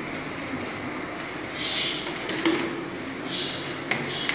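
White plastic containers being handled as their lids are taken off, with two short high squeaks of plastic rubbing on plastic and a sharp click near the end.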